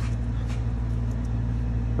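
Steady low machine hum with a few faint clicks about half a second in.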